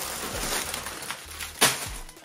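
Sealed plastic bags of LEGO pieces rustling and crinkling as they are handled and lifted out of a cardboard box, with one sharp knock about one and a half seconds in.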